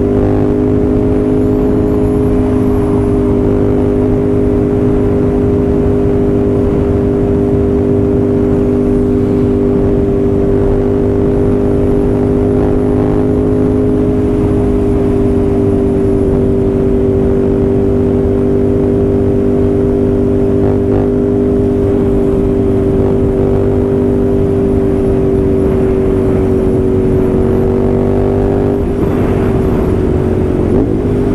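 Ducati Scrambler's air-cooled L-twin engine running at a steady freeway cruise, a constant drone with wind rush. Near the end the engine note dips briefly as the throttle eases, then picks back up.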